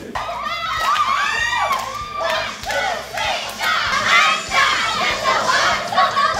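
Several young women's voices shouting a cheer chant together, high-pitched and energetic.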